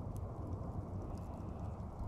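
Campfire embers burning, with an occasional faint crackle over a steady low rumble.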